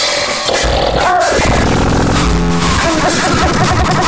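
Harsh noise music: a dense, loud, unbroken collage of electronic loops layered with processed, chopped-up samples from pornographic film soundtracks.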